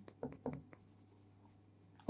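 Marker pen writing on a whiteboard: a few short, faint strokes within the first second.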